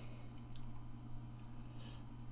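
Pause with only faint room tone: a steady low hum under light background noise.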